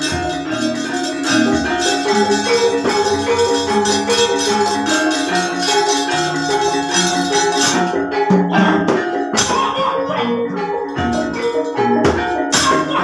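Javanese gamelan playing, its bronze metallophones ringing out a repeating melody. From about eight seconds in, sharp knocks cut in among the music.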